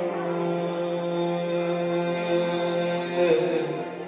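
A male singer holding one long sung note into a microphone, as in a slow Sufi opening, with the pitch bending slightly just before the end of the note.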